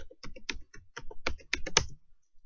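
Computer keyboard typing: a quick, uneven run of about a dozen keystrokes as a password is entered.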